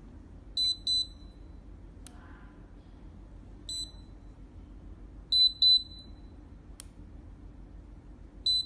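Fipilock FL-P4 fingerprint padlock beeping as fingers are pressed on its sensor in its empty, unenrolled state, where any finger opens it. It gives a pair of short high beeps, then a single beep, then another pair, with two sharp clicks in between.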